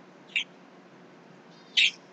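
Low room hiss broken by two brief high mouth or breath noises from the man: a short click about a third of a second in and a quicker, louder breath near the end, just before he speaks again.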